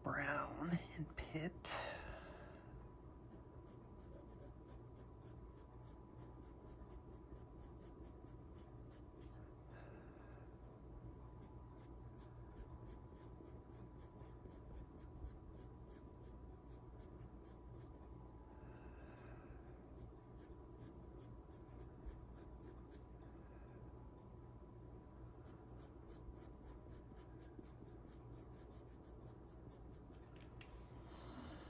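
Pastel pencil scratching on Pastelmat paper in many short, quick strokes, faint over a steady low hum.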